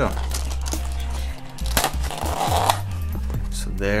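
Background music, with a short scraping rustle of cardboard and paper packaging about two seconds in as a fabric watch band is slid out of its insert.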